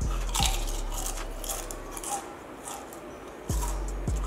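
A person biting into and chewing a Pringles potato chip, with crisp crunching. Underneath is background music with a thumping beat that drops out for a moment past the middle and comes back near the end.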